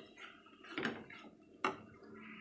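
Wooden spatula stirring fried amaranth leaves in an aluminium kadai, with soft scraping against the pan and two sharper knocks, one about a second in and one near the end.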